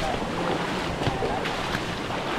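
Footsteps splashing through shallow water running over a rock slab, over a steady rush of water, with a few distinct splashy steps.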